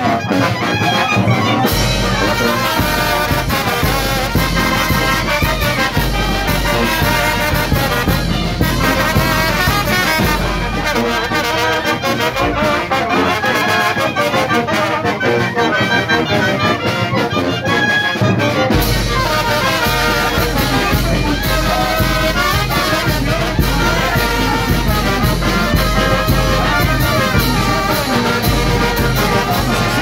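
Oaxacan wind band playing: brass, clarinets, sousaphones and bass drum together. The deep bass drops out for several seconds in the middle, then comes back.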